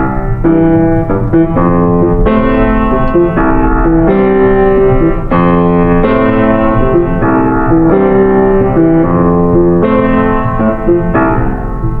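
Electronic keyboard with a piano sound playing sustained chords that change every second or so, with no singing. These are the song's closing instrumental bars, easing off slightly near the end.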